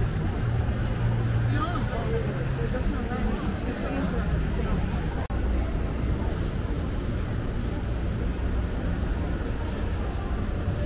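City ambience: a steady low rumble of traffic under people talking nearby, with the sound cutting out for an instant about five seconds in.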